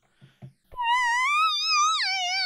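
Stylophone Gen X-1 analogue synth playing a high lead note with a steady vibrato wobble. It starts about three-quarters of a second in and glides slowly upward in pitch as the patch is tuned up.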